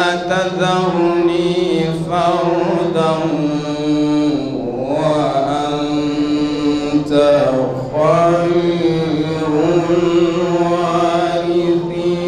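A man's voice reciting the Qur'an in a melodic, chanted style through a microphone, with long held notes that turn and ornament in pitch. New phrases begin about five and about eight seconds in.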